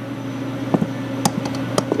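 A steady background hum with a few light, sharp clicks in the second half, some in quick pairs. The clicks are metal engine parts, pistons and connecting rods, being set down and picked up by hand.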